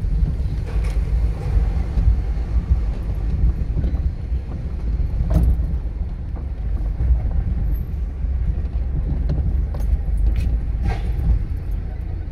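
Steady low rumble of outdoor street noise, with a few faint clicks about five and eleven seconds in.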